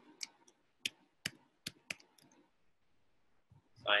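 A stylus tapping on a pen tablet while writing on a digital whiteboard: about seven sharp clicks over the first two seconds, then quiet.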